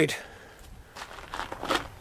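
Faint rustling with a few light clicks, over a low hiss.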